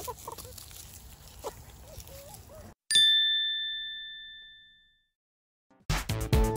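Faint clucking from chickens feeding on the grass, then the sound cuts off abruptly. A single bright bell-like ding follows and rings out, fading over about two seconds.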